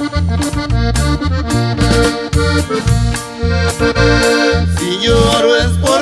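Norteño music: an accordion plays an instrumental passage over a steady bass beat of about two pulses a second.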